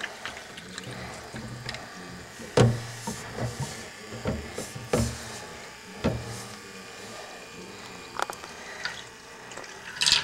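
Hot water swirling and sloshing in a water tornado maker's container, with a faint low hum underneath and several knocks as it is stirred and handled.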